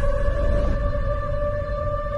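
Tense drama-serial background score: a sustained eerie drone of held tones over a low rumble.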